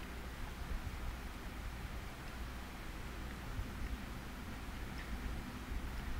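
Quiet room tone: a steady low hum with a faint even hiss, and one faint tick about five seconds in.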